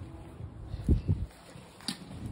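Footsteps on a dry grass lawn, with two low thuds about a second in and a short click near the end.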